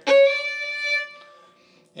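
A single violin note bowed hard and dug in with the second finger, loud at the attack, held for about a second and then fading away.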